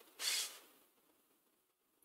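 A short, faint breath about a quarter second in, then near silence.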